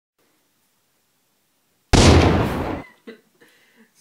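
A single gunshot sound effect: one sudden, loud bang about two seconds in, heavy in the lows, fading out within a second.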